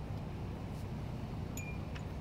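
Outdoor ambience of wind: a steady low rumble with a few faint high clinks, one of them ringing briefly about one and a half seconds in.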